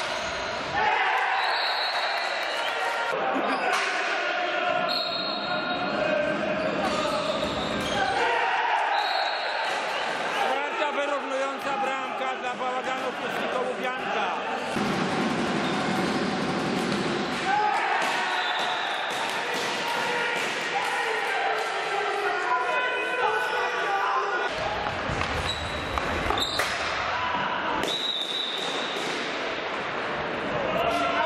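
Indoor hockey play in a large, echoing sports hall: repeated knocks of sticks and ball on the wooden floor, mixed with players' and spectators' voices calling out.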